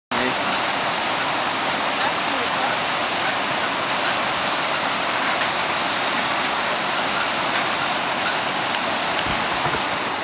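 Steady rushing of a rocky river running in shallow rapids.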